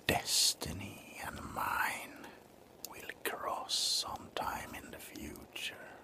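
A man whispering close to the microphone in short phrases, with sharp hissing consonants.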